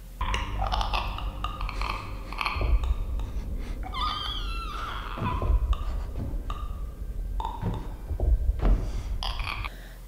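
Soundtrack of an infected "clicker" creature giving irregular clicking, rattling calls, with a rasping, gliding cry about four seconds in, over a steady low rumble.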